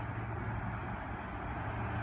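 Steady outdoor vehicle noise: an even low hum under a wash of noise, with no sudden sounds.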